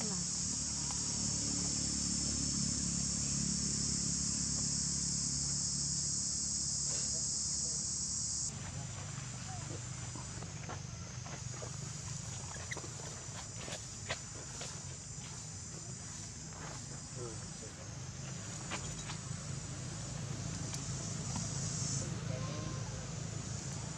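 A steady, high-pitched chorus of insects chirring over a low background rumble. The chorus changes abruptly and turns a little quieter about eight seconds in, and a few faint clicks are scattered through the second half.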